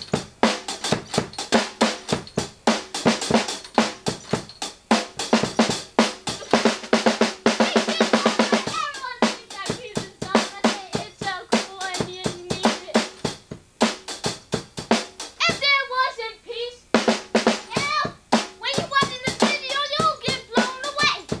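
Drum kit played live, snare and kick hits with rimshots in a quick, steady beat that thickens into a fast roll in the middle. A voice cuts in with short calls in the second half.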